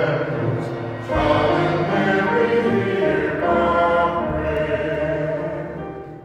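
A congregation singing a short sung response together with piano accompaniment after a spoken petition. The singing dies away near the end.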